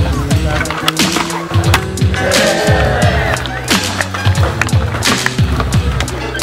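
Background music with a steady beat and bass line over the sounds of skateboarding: polyurethane wheels rolling on concrete, and sharp clacks of the board popping and landing.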